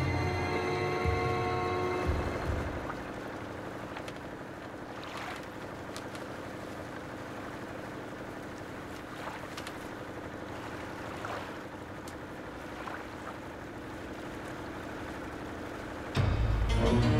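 Motorboat running steadily on the water, with a few faint splashes. Music fades out in the first two seconds or so.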